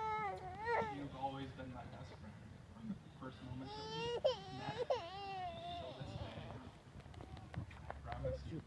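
High-pitched crying, like an infant fussing: a short cry at the start and a longer, wavering cry from about three and a half to six seconds in.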